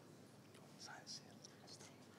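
Near silence: room tone with faint whispering about a second in.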